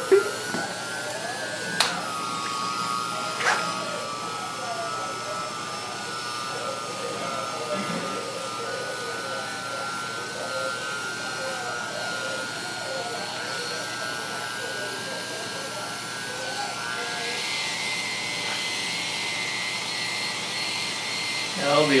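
Oster electric barber clipper running with a steady buzzing hum while cutting hair, with a couple of sharp clicks in the first few seconds; its hum steps up in pitch about seventeen seconds in.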